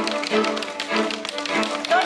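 Live string ensemble music, violins and cello, over a low note that pulses a little under twice a second, with many sharp taps through it.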